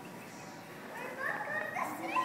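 High-pitched children's voices chattering and calling over a background crowd murmur, the voices picking up about a second in.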